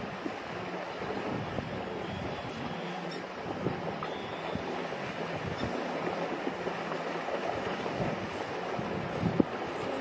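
Steady rushing noise of wind on the microphone over flowing river water.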